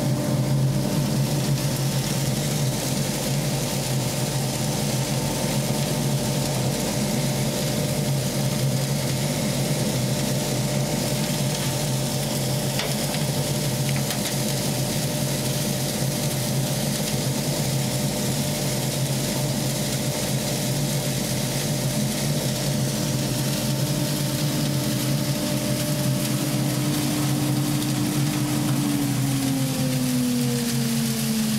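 Chip extractor running through a homemade cyclone separator: a steady motor hum with a constant rushing hiss of air and fine dust. Near the end the hum falls in pitch as the motor slows.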